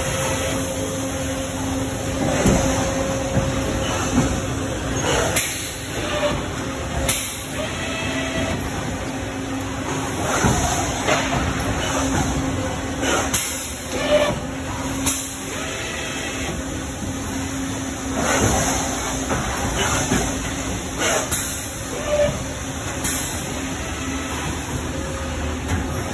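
Milacron Roboshot injection molding machines running: a steady low machine hum with short hissing bursts that come in pairs about every eight seconds, in time with the machines' cycle.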